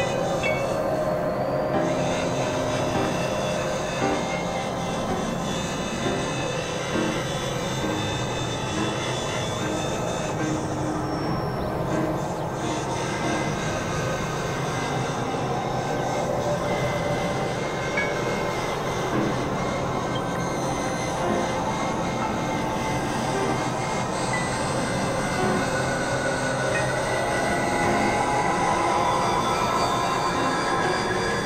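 Dense experimental noise-music collage: several music tracks layered on top of each other into one thick, unbroken wash of many sustained high and low tones and drones.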